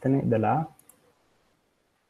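A man speaks briefly, then a couple of faint computer mouse clicks, followed by quiet room tone.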